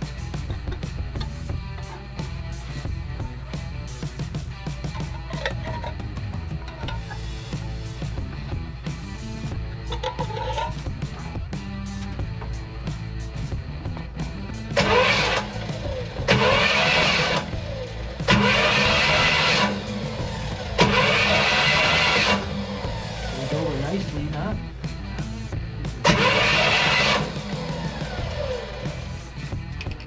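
1964 Pontiac LeMans engine cranked over on its starter in five bursts of a second or so, starting about halfway through. It spins over freely with no compression after 30 years of sitting, with oil freshly put in the cylinders. Background music plays throughout.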